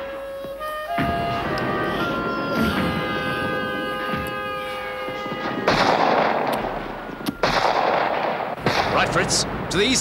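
Cartoon barrage sound effects over orchestral score: a long falling whistle, then two heavy blasts about six and seven and a half seconds in. Sharp cracks and shouting voices follow near the end.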